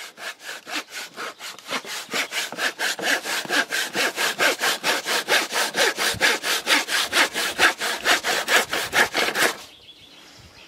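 Fine-toothed hand saw cutting through a wooden block, in fast, steady back-and-forth strokes of about five a second. The strokes grow louder after a couple of seconds and stop shortly before the end.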